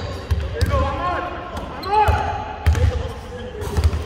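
Basketballs bouncing on a hardwood court: irregular dull thumps as players dribble, with players' voices in a large echoing hall.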